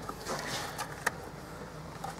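Faint handling sounds of a hand reaching among hoses and wiring in a car's engine bay: light rustling and a few small clicks over a low steady hum.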